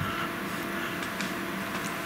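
A pause in speech holding only a steady, quiet room hum: even background tone with no distinct events.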